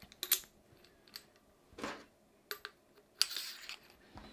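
Light metallic clicks and taps as the metal tube sections of a Trail Jack 2.0 motorcycle stand are handled and fitted together. A brief hiss comes about three seconds in.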